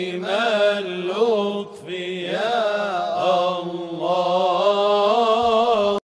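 A single voice chanting in long, wavering held notes, with a brief break between phrases about two seconds in; it cuts off abruptly at the end.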